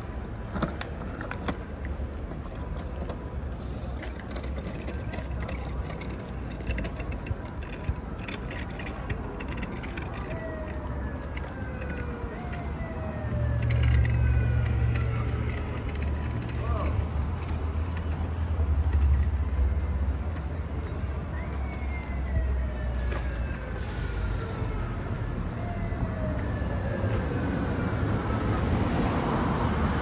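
City street ambience: traffic running along the road, with a low rumble that swells from about halfway through. A series of slow falling tones repeats in the second half.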